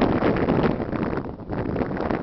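Wind buffeting the microphone: loud, irregular rumbling gusts.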